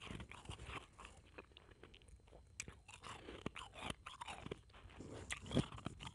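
Mouth crunching and chewing blended ice powder: a string of irregular, crisp crunches, with a louder bite near the end.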